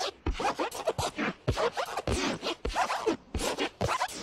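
Logo audio mangled by editing effects: rapidly chopped, stuttering fragments, several cuts a second, many with quick falling pitch glides.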